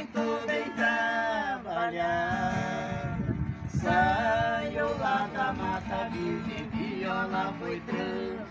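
Viola caipira played with a singer carrying a slow moda caipira melody over it, the voice holding long notes. The lyric is about the viola's pinewood.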